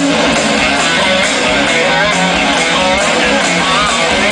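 Live rock band playing a song: electric guitars over drums, with a steady cymbal beat and a high, wavering melody line from about halfway.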